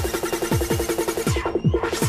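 Donk-style hard dance music from a DJ mix: a pounding kick drum under rapid, bouncy repeated bass stabs. The high end drops out briefly near the end.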